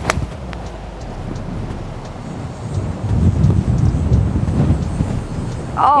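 A single sharp click of a 50-degree wedge striking a golf ball, followed by strong wind buffeting the microphone, rumbling louder in gusts from about halfway through.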